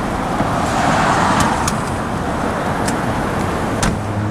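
Road traffic: a car passing on the street, its noise swelling about a second in and then slowly fading, with a few sharp clicks.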